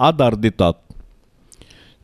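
A man's voice reciting a prayer meditation in Konkani, breaking off under a second in; then a short pause with a faint click and a soft intake of breath before he speaks again.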